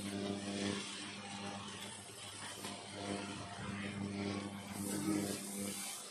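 Rice vermicelli sizzling in a wok as a wooden spatula tosses and scrapes it, over a steady low mechanical hum.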